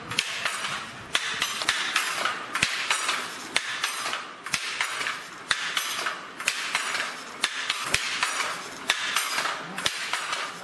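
Wooden fly-shuttle handloom being worked: a sharp wooden clack about twice a second as the shuttle is thrown and the beater knocks in the weft, with a swishing rush between strikes.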